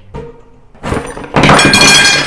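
A sudden, loud crash-like noise with a ringing shimmer, building about a second in and loudest near the end.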